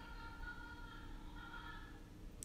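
Faint, soft background music: a few quiet sustained notes that shift slightly in pitch, over low room hum.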